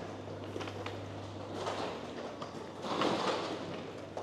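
Indoor hall background noise while walking, over a steady low hum, with louder noisy swells about two and three seconds in.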